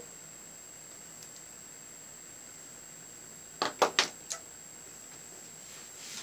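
Quiet room tone with a faint steady high-pitched whine. About three and a half seconds in come four quick, sharp clicks of makeup tools or containers being handled.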